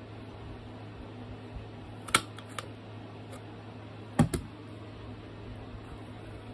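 Handheld metal hole punch clicking as it is squeezed through a book's cover board. There is a sharp click about two seconds in, a couple of faint ticks, then a loud double click about four seconds in.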